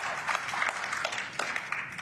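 Audience applause in a snooker arena: many hands clapping together, following a potted black in a break that has reached 93.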